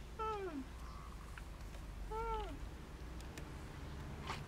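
Baby macaque giving two short, plaintive coo cries: the first slides down in pitch, the second, about two seconds in, rises and then falls.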